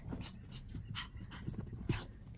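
Chihuahua puppy playing with a fabric hair tie on carpet: faint scuffling and a few soft knocks, with a slightly louder one near the end.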